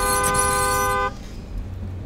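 A car horn sounding one steady, many-toned blast about a second long that cuts off abruptly, followed by a low rumble of street noise.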